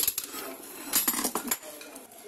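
Light metallic clinks and taps of steel hand tools and scooter CVT parts being handled: a sharp click at the start, then several quick clinks about a second in.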